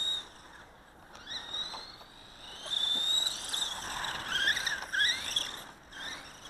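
Small electric RC buggy (Dromida DB4.18) driving, its motor and gears giving a high whine that rises and falls in pitch with the throttle. The whine is faint for the first couple of seconds and comes back louder and more varied about halfway through.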